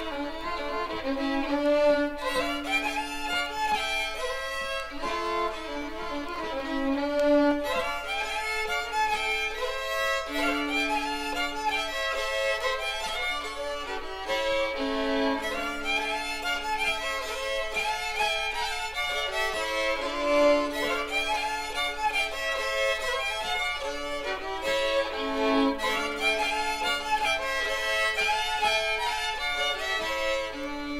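Swedish folk fiddle music: violins playing a lively, ornamented traditional tune over held lower notes.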